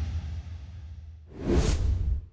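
Intro sound-effect sting for an animated logo: a deep bass rumble dying away, then a swelling whoosh for the transition near the end.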